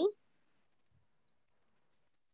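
Near silence: a voice cuts off at the very start, then dead-quiet call audio.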